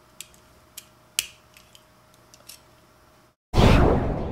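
Light clicks and taps of small plastic snap-together robot kit parts being pushed together by hand, with one sharper click about a second in. Near the end, after a brief dropout, a loud rushing transition sound effect starts suddenly and fades slowly.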